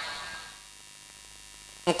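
Faint, steady electrical hum and hiss from the microphone and sound system during a pause in a man's speech; his voice fades out at the start and resumes just before the end.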